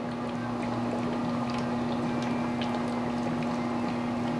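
Oxyhydrogen (HHO) torch flame burning steadily as it cuts an aluminum drink can: an even hiss with a constant low tone underneath, scattered faint crackles, and bubbling from the water bubbler that feeds the gas.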